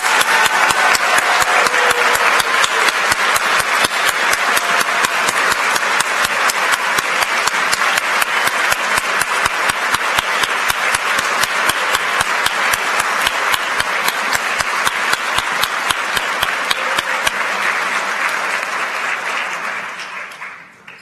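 A large audience applauding, with one set of close, loud claps keeping an even beat of about four a second over the crowd. The applause dies away near the end.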